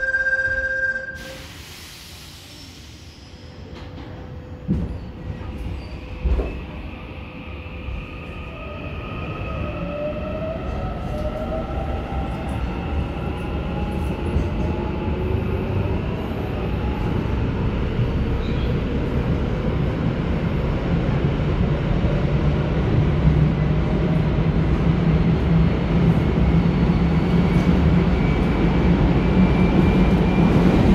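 Korail Bundang Line EMU pulling away, its Toshiba IGBT VVVF inverter traction motors whining in several tones that glide upward in pitch as the train accelerates, over a rumble of wheels and running gear that grows steadily louder. A steady two-tone beep sounds for the first second, and a couple of thumps come a few seconds before the whine starts.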